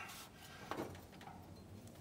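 Faint metal knock of a pry bar being set between a water pump pulley and the fan clutch nut, once about three-quarters of a second in; otherwise low, quiet handling noise.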